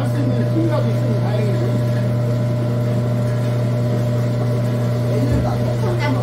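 Electric food grinder's motor running steadily with a low hum while grinding pear, apple and radish fed into its hopper.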